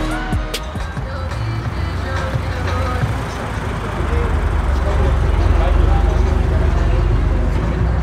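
Low engine rumble of a Toyota 86 race car rolling slowly past at low revs, growing louder over the second half, with crowd chatter in the background.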